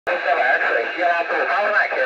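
A voice talking over an FM amateur radio, received through the International Space Station's ARISS crossband repeater, with a narrow radio sound.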